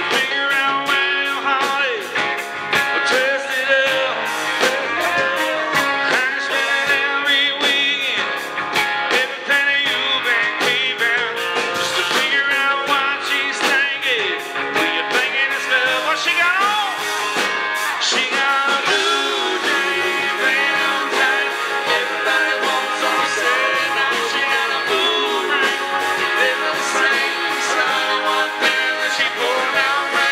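Live country-rock band playing loud, with electric guitars and a male lead vocal over a steady beat.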